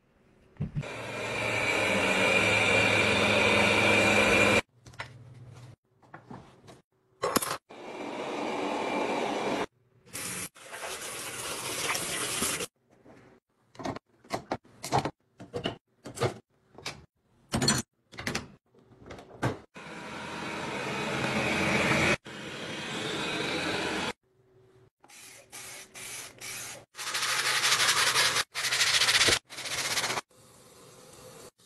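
Short cleaning clips cut together: several stretches of hissing spray and running water, each a few seconds long and cut off abruptly, with short clicks and knocks between them.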